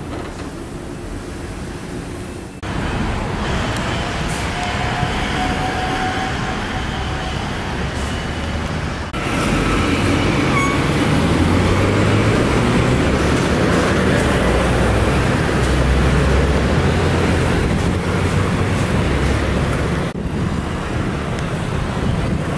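Steady city street traffic noise, a dense rumble of passing vehicles, that gets louder in two sudden steps, about two and a half seconds in and again about nine seconds in.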